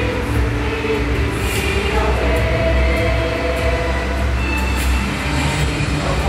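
A large group of students singing together in a hall, holding long notes, over a heavy low rumble.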